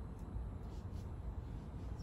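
Low steady room hum with a few faint light clicks from plastic IV tubing being handled while it is primed.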